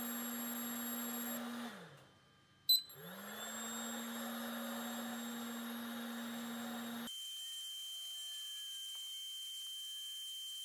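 LaserPecker 2 diode laser engraver running while it works through birch plywood, with a steady electric hum. Nearly two seconds in the hum winds down and almost stops. A sharp click follows, and then the hum winds back up. About seven seconds in the low hum gives way to a higher steady whine with a faint hiss.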